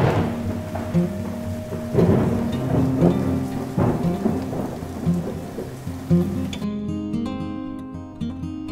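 Heavy monsoon rain pouring down, with several loud swells, under acoustic guitar music; the rain cuts off suddenly near the end, leaving only the guitar.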